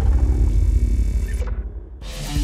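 Cinematic logo-sting sound effect: a deep rumble ringing on after a boom, with a high hiss that cuts off about three-quarters of the way through and the rumble fading toward the end.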